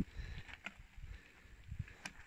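Faint low rumble with a few light clicks from mountain bikes being pushed and ridden off along a dirt trail.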